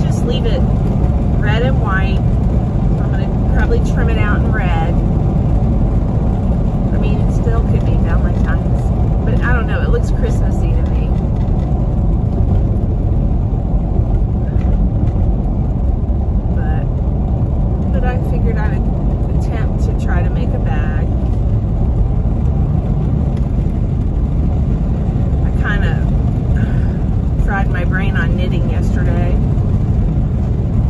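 Steady low road and engine rumble inside a moving SUV's cabin, with a woman's voice talking on and off, faint under the noise.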